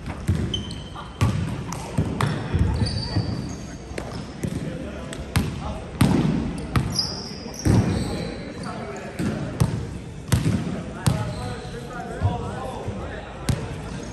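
Volleyballs being hit and bouncing on a hardwood gym floor: irregular sharp smacks, roughly one a second, each ringing on in the hall. Short high squeaks of sneakers on the hardwood come in between.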